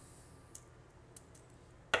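A few faint, small clicks from a metal nut and a screwdriver being handled.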